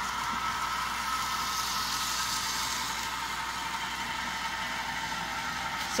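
A steady mechanical whir with a few faint held tones, unchanging in level throughout.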